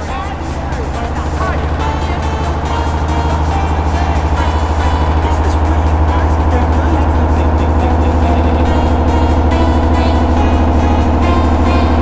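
Heavily distorted, effects-processed audio from a meme edit: a loud, dense smear of sound with a strong low drone and fast flutter under a thick layer of steady tones. It swells over the first few seconds and then holds steady.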